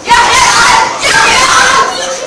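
A group of young voices shouting together in unison, loud, in two phrases that stop shortly before the end.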